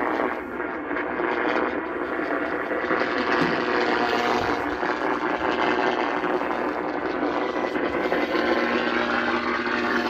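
Portable AM radio playing a noisy, static-heavy broadcast through its small speaker, a steady hiss-like sound with no clear words.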